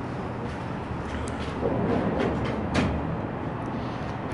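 Steady low rumble of city street traffic, with a few short knocks and clicks in the middle.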